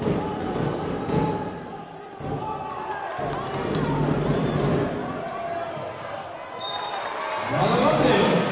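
Basketball bouncing on a hardwood court during play, with voices in the arena throughout.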